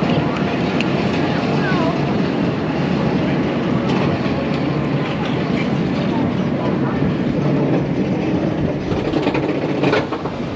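Gerstlauer Euro-Fighter coaster train being hauled up its vertical chain lift hill: a steady, dense mechanical rattle of the lift chain and train, easing slightly near the end as the train reaches the crest.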